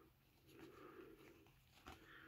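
Near silence, with faint rustles and a soft tick or two of trading cards being thumbed through by hand.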